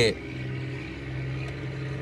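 A steady low hum at one constant pitch, with a faint hiss, fills a pause in the talking.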